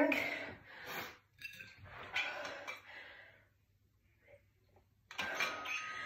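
A woman breathing hard after a high-intensity exercise interval; her breath fades into a near-silent pause. Near the end comes a sudden short noise as she handles a plastic water bottle.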